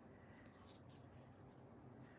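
Near silence with faint rustling of fabric appliqué pieces being handled and smoothed onto a quilt block.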